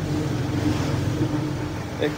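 Hyundai Starex van's engine idling with a steady low hum.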